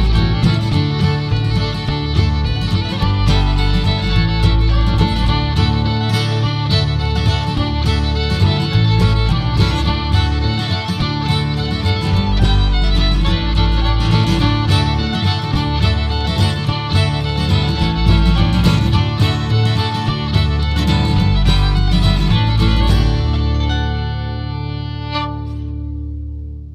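Old-time fiddle tune played on fiddle over a guitar accompaniment with a low bass line. Near the end the tune finishes and a final chord rings out and fades away.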